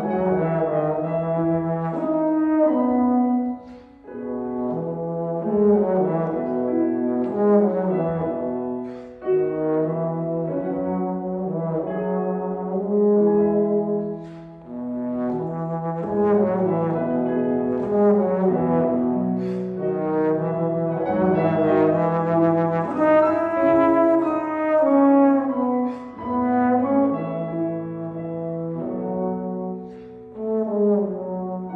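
Trombone playing a slow, lyrical melody in long held notes over grand piano accompaniment, with brief pauses between phrases.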